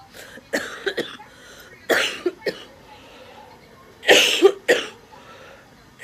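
A woman coughing in three short bouts about two seconds apart, each of two or three sharp coughs.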